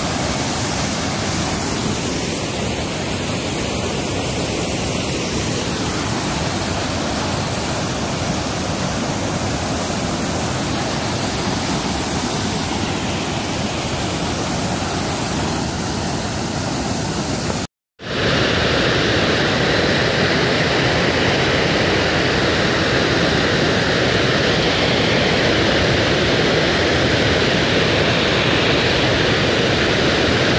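Flood-swollen waterfall: a steady, loud rush of muddy floodwater pouring over rocks. It drops out for a moment about two-thirds of the way in, then returns as a duller, fuller rush.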